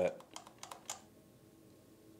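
A quick run of light, sharp plastic clicks from a Traxxas TQ Link pistol-grip RC transmitter being handled, six or so within the first second, then only faint room tone.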